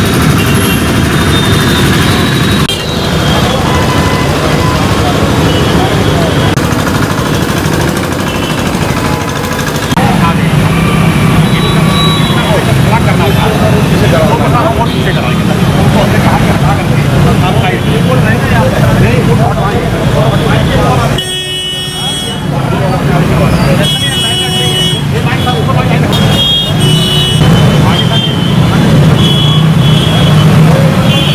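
Busy street ambience: several people talking at once over motor traffic, with vehicle horns honking repeatedly, most often near the end.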